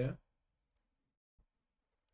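The tail of a spoken word, then near silence broken by two faint computer mouse clicks, about three-quarters of a second and a second and a half in.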